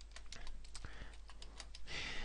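Typing on a computer keyboard: a quick, uneven run of quiet key clicks.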